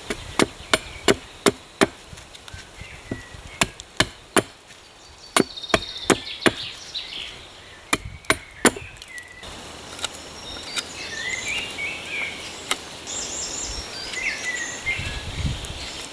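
A hatchet chopping into wooden sticks on a tree stump: sharp strikes in quick bursts of three to five, about fifteen in all, stopping after about nine seconds. Birds then chirp, with a dull thud near the end.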